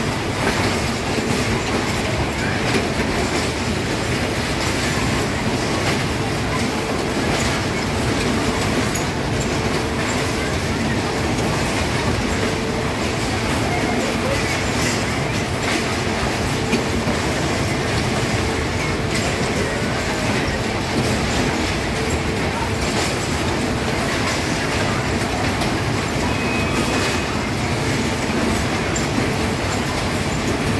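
Whip ride running: its small wheeled cars roll around the platform, a steady rolling rumble with many small clicks and rattles that does not let up.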